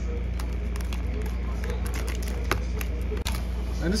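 Utility knife slitting the small clear tape seals on a cardboard box: a few short clicks and scrapes over a steady low hum.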